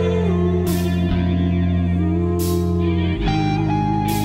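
Instrumental rock music: an electric lead guitar playing bending notes over held bass notes, with no singing.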